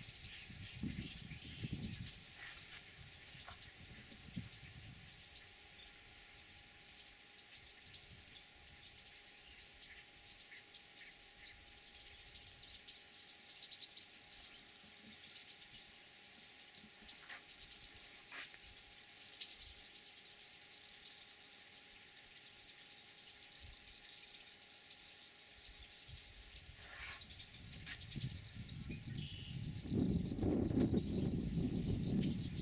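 Faint open-marsh ambience: a steady high hiss with a few short, distant bird calls scattered through it. A low rumble rises at the start and again near the end.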